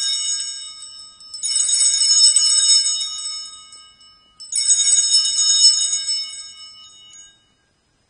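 Altar bells rung at the elevation of the chalice during the consecration: a cluster of small bells shaken in three rings. The first is already sounding and dies away, and the next two start about a second and a half and four and a half seconds in, each ringing out and fading over about three seconds.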